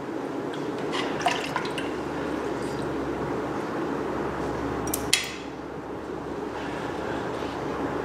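Water sloshing and dripping in a steel can as a hand fishes a freshly quenched aluminum bronze casting out of it, with light clicks of metal against the can and one sharper clink about five seconds in.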